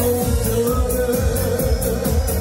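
A male singer singing a pop song live into a microphone, holding one long note, over music with a steady beat of about three strokes a second.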